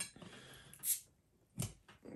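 A metal bottle opener prying the crown cap off a glass Coca-Cola bottle: a click as it catches the cap, a short hiss of escaping gas a little under a second in, and a sharper knock as the cap gives. The hiss shows the old bottle still holds some carbonation.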